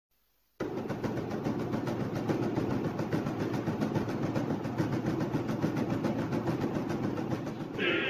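A loud, steady rumbling clatter with a fast, even rhythm starts abruptly under a second in. Near the end a different, brighter sound joins it.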